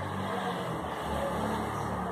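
Steady background noise with a low hum, even and unchanging, with no distinct events.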